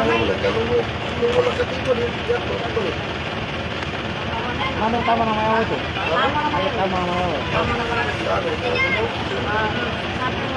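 A woman's amplified singing voice in the Maranao dayunday style. It holds long notes, then moves into wavering, ornamented phrases, over a steady background hum.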